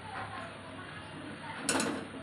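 Mustard oil pouring quietly from a plastic jug into a hot aluminium kadhai, then a short clatter of quick clicks near the end.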